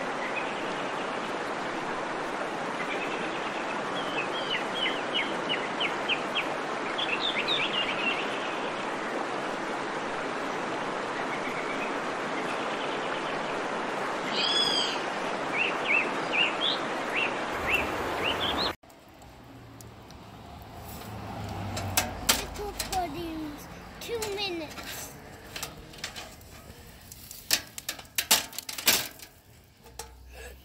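Wood fire burning high in a barbecue grill, a steady rushing noise of flames, with birds chirping over it now and then. About two-thirds of the way through it cuts off suddenly to a quieter stretch of scattered clicks and knocks with faint voices.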